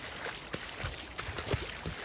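Floodwater running over a flooded farm track, a steady rushing and lapping, with a few soft low knocks about a second in.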